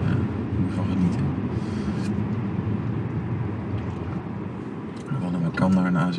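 Steady low rumble of road and engine noise inside the cabin of a moving Audi A7 45 TFSI, whose 2.0-litre turbocharged four-cylinder petrol engine is running under light load.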